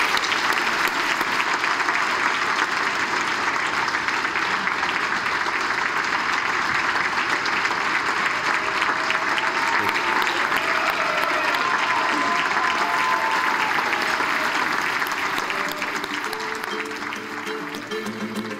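Audience applauding steadily, the applause dying away over the last few seconds as music fades in.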